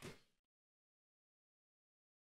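Near silence: the tail of a shout fades out in the first half second, then the sound track goes completely dead.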